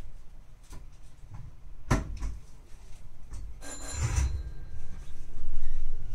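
Running noise heard inside a Nankai 12000-series limited express car: a low rumble with a single sharp knock about two seconds in, a short hissing burst about four seconds in, and the rumble loudest near the end.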